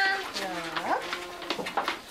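A calf bawling: a low call held for about half a second that then rises sharply in pitch about a second in.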